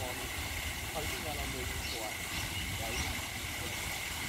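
Steady splashing of a pond fountain's vertical water jet falling back onto the water surface. Faint voices talk in the background, and a steady high-pitched hum runs throughout.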